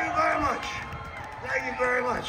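A man talking through a stage PA system, with no music playing.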